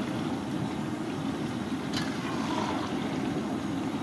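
Steady roar of a gas burner under a large iron wok of hot oil, with the oil bubbling around pieces being deep-fried. A single sharp clink, the slotted ladle against the wok, about two seconds in.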